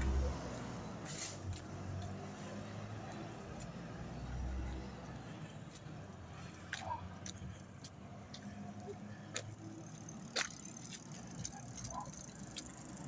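Quiet night-time street ambience: a faint, steady low rumble of traffic with a few scattered sharp clicks and light rattles, like a bicycle being handled.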